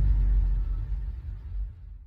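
Tail of a logo sting: a deep low rumble fading out over the last second.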